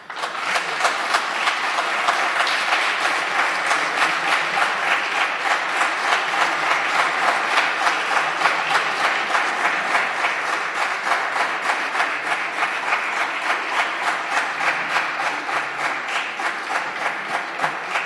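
Many deputies applauding in a large parliamentary chamber: dense, sustained clapping that starts suddenly and eases slightly near the end.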